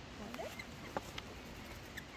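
A few light clicks and taps, three of them close together near the middle, as Australian ringneck parrots are hand-fed at a picnic table.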